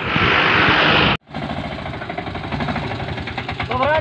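Wind rushing on the microphone, then after an abrupt cut a diesel autorickshaw engine idling with a rapid, even beat.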